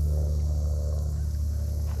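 Steady low drone of an engine running, with a faint rushing sound in the first second or so.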